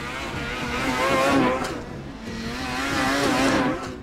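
Snowmobiles riding through powder toward and past the microphone, their engines rising and falling in pitch. The sound swells twice, once about a second in and again near the end, as successive sleds go by.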